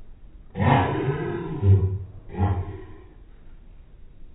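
A person acting sick gives two loud, hoarse outbursts into her hand: a long one and then a shorter one.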